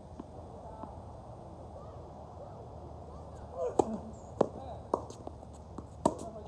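Tennis ball struck by rackets and bouncing on a hard court during a rally. It gives a series of sharp pops from a little past halfway, about half a second apart.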